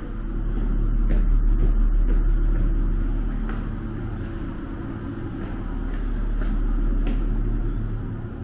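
A loud low rumble with a steady mechanical hum, swelling and fading over a few seconds, with faint footsteps.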